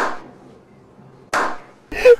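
Two slow, single hand claps a little over a second apart, each sharp with a short echoing tail.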